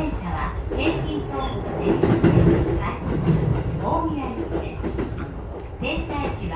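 Electric commuter train running, heard from inside the front car: a steady low rumble of wheels on the track, louder for a moment about two seconds in, with people's voices over it.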